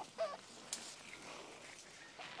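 Chickens clucking softly: a few short calls, the clearest just after the start.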